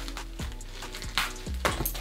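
Stiff plastic packaging being poked and pushed at with a pin, giving a few short sharp clicks and crinkles, over soft steady background music.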